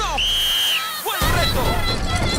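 Edited TV-competition soundtrack: a music sting fades out while a steady high beep sounds for about half a second. A little over a second in, live outdoor noise cuts in suddenly, with people shouting.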